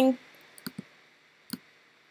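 A few separate computer mouse clicks.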